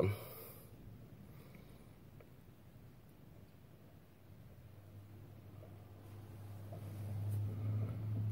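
Quiet car cabin with the engine shut off. A low steady hum builds up over the last few seconds.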